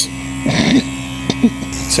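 Electric hair clippers buzzing steadily while cutting hair, with a short laugh near the end.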